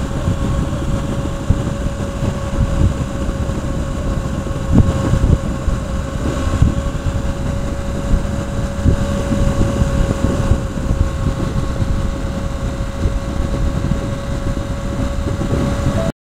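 Motorcycle riding at steady highway speed: wind rush buffeting the microphone over the engine's even drone, with a constant thin whine underneath.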